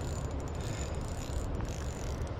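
Shimano Sedona 500 spinning reel being cranked steadily, its gears running as line is retrieved on a hooked trout.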